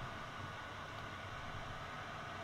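Steady, even hiss of air from a mini SMD preheater's fan blowing hot air.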